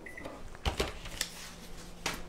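Electronic kitchen timer being set, two short high beeps from the button presses right at the start, followed by a few sharp clicks and knocks.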